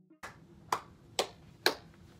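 Three sharp clicks about half a second apart in a quiet room, after a fainter one; the last is the loudest.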